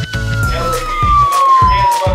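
A long whistle: one high tone that slowly falls in pitch. It plays over background music with a steady beat.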